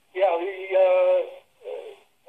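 A person's voice over a telephone line, drawn out in a sing-song, held-pitch vocal sound rather than words, then a shorter sound near the end.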